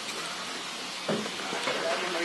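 Steady rushing hiss of wind and water from a boat underway on the river, with faint voices in the background about a second in and near the end.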